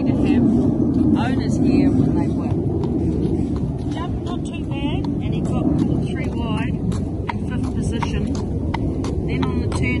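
Shod hooves of a walking horse clicking irregularly on concrete, over a steady low rumble.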